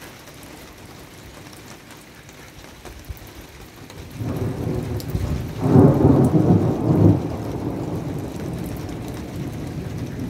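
Rain falling steadily, with a peal of thunder that builds about four seconds in, is loudest a couple of seconds later, and then rumbles away.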